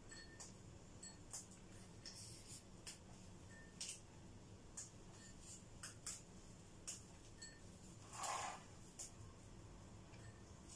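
Faint, scattered light clicks of a spoon knocking against small metal cake molds and a bowl as cream is spooned out, with one longer, louder scrape a little after eight seconds in.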